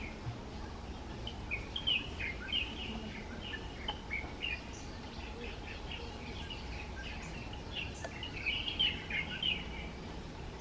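Small birds chirping in quick, scattered notes, busiest in the first few seconds and again near the end, over a steady low background noise.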